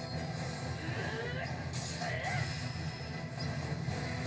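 Soundtrack of an anime episode playing: steady low background music with faint voices over it.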